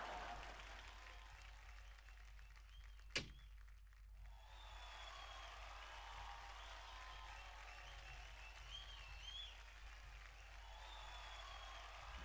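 A single sharp bang about three seconds in, from a stage door swinging shut. It sits over faint background music and applause.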